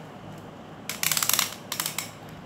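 Beyblade Burst ripcord launcher ratcheting: a rapid run of clicks about a second in and a short second run near the end, as a ripcord is fed in to load the launcher for the next round.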